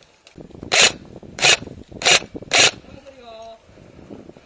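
Four short, loud rustling scrapes about two-thirds of a second apart, cloth rubbing close against the microphone.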